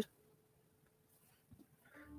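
Near silence: room tone in a pause between a woman's spoken remarks, with the tail of her voice at the very start.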